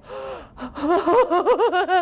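A woman's sharp, breathy gasp, followed about a second in by a quick run of short high laughing pulses in the voice of a frightened little billy goat.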